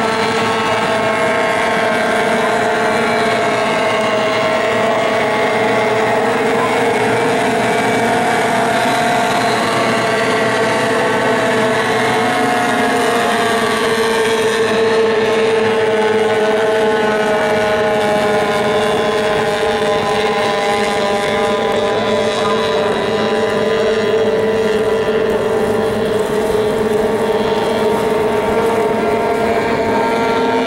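Several J-class hydroplane outboard engines running at racing speed, a steady high-pitched buzz of overlapping engine notes whose pitches drift slightly as the boats run the course.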